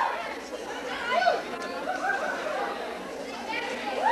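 Indistinct chatter of several voices talking at once, no words clear, at a lull between acts.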